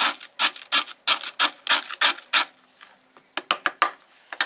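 Chef's knife chopping a graham cracker into crumbs on a plastic cutting board: rapid sharp chops, about five a second, then a short pause and a quicker run of chops near the end.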